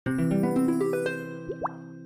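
Short animated-logo intro jingle: a quick run of bright notes piles up into a ringing chord, with two short upward-sliding pops about one and a half seconds in, then the chord fades away.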